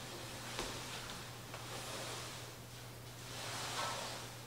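Canvas drop cloth being pulled and spread across a hardwood floor: soft rustling and sliding of the fabric, over a low steady hum.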